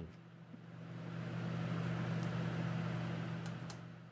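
Laminar flow hood fan running: a steady low hum with an airy rush of air that swells up and fades away again, with a few faint light clicks in the second half.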